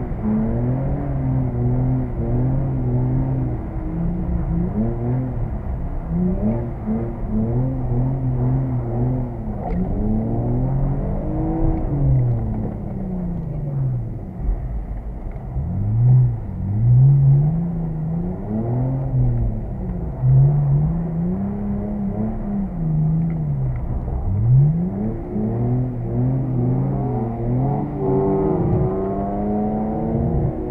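An E46 BMW 330's straight-six engine heard from inside the cabin, driven hard with the revs climbing and dropping in repeated swells every two to three seconds. The revs dip low about halfway through and again near the end.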